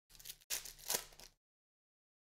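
Foil wrapper of a football trading-card pack being torn open by hand: two quick tears, the second longer and louder.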